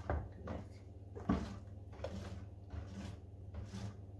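Wire whisk stirring teff batter in a stainless steel bowl, knocking and clinking against the bowl's side several times, loudest about a second in, over a steady low hum.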